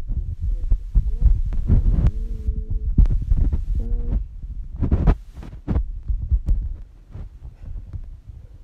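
Low rumble and irregular thumps of a handheld phone being moved and handled close to its microphone, with a short steady hum about two seconds in.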